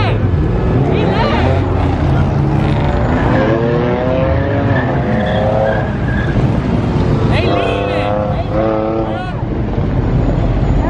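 Cars doing donuts on pavement: engines revving hard and tyres squealing in long, wavering screeches.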